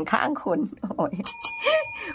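A small metal bell struck once a little over a second in, ringing on with several clear high tones that slowly fade.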